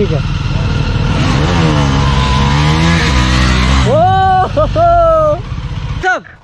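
Several motorcycles riding past together, their engines revving, the engine note dipping and then rising again in the middle. Near the end come two loud, long held tones.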